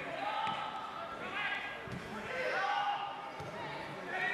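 Footballers' voices shouting across the pitch, with a couple of dull thuds of the ball being kicked.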